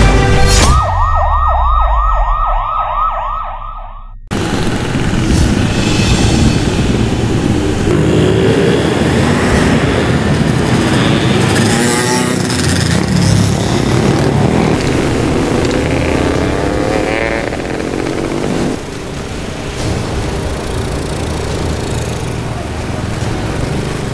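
A siren on a rapid yelp, sweeping up and down several times a second, for the first few seconds. Then many small motorcycles and scooters running and revving past on a street, their engine notes rising and falling over a dense, steady traffic noise.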